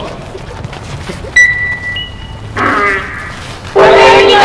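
A lull in a yosakoi dance team's music and shouting. About a second and a half in, a loud high steady tone sounds for about a second, with a second, higher tone joining at its end. A voice calls out, and just before the end the dancers' loud chanting starts again.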